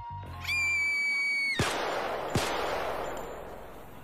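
A whistle-like tone that rises and then holds for about a second, cut off by two sharp bangs less than a second apart, each followed by a long fading hiss.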